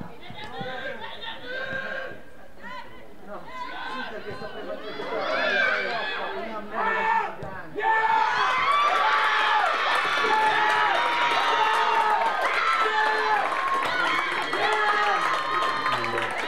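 Players shouting on a football pitch, then about halfway through a sudden burst of cheering and excited shouting that carries on to the end: celebration of a goal.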